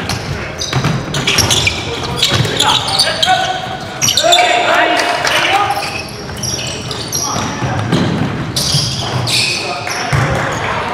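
Game sound of a basketball game in a gym: a ball bouncing on the wooden court amid repeated knocks, short high sneaker squeaks, and players' shouts and calls, with one longer call held for about a second near the middle.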